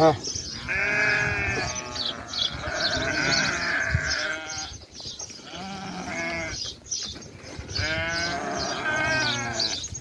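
Sheep bleating, several long calls one after another, each with a wavering pitch.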